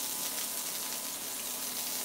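Sliced onions sizzling steadily in hot avocado oil in a skillet.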